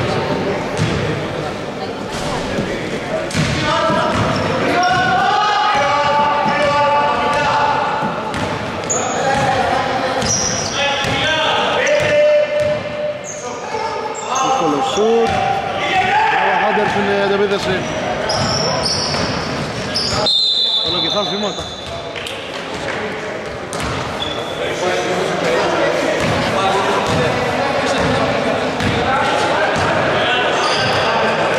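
Basketball bouncing on a wooden gym floor during play, mixed with men's voices calling out, echoing in a large hall.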